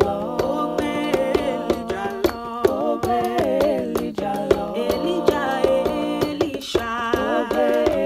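A cappella singing by one woman's voice layered into several parts, moving in close harmony over a held low note.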